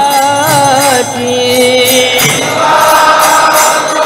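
Devotional chanting, a sung kirtan melody with a metallic percussion beat of hand cymbals or a bell about twice a second. About two and a half seconds in, the melody is taken up by more voices.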